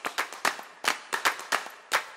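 Sharp percussive hits like claps, each with a short echo, several a second in an uneven rhythm, leading into a music track.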